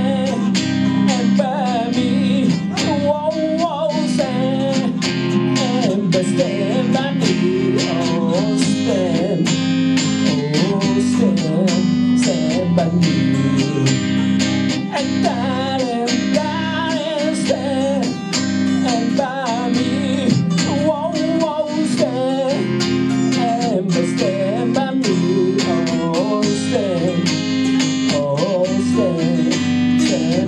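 Two acoustic guitars playing live: steady strummed chords under a picked lead melody.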